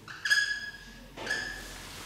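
Dry-erase marker squeaking across a whiteboard in two short strokes, about a quarter second in and again just after one second.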